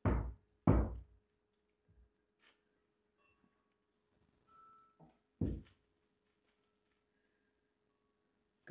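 A utensil knocking dully against a mixing bowl and the slow cooker's crock as thick cheese sauce is scraped out and spread. There are two knocks close together at the start and another about five seconds in, with a few faint taps between.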